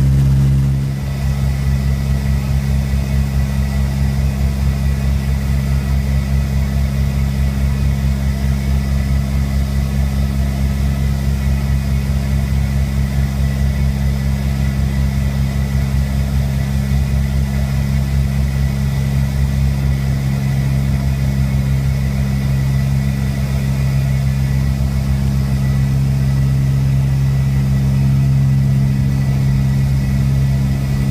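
Cabin drone of an LC-130 Hercules ski plane's four turboprop engines and propellers heard from inside the cargo hold: a loud, steady low hum with a few fixed tones, dipping briefly about a second in.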